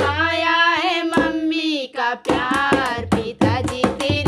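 Hindi sohar folk song: a solo voice holds one long, wavering note with no drum under it. After a brief pause about two seconds in, the singing starts again with regular hand-drum strokes.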